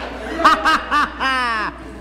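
A man laughing: three short bursts of laughter, then a longer laugh that falls in pitch.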